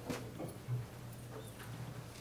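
Faint scattered light clicks from a laptop keyboard and trackpad as files are opened, over a steady low hum.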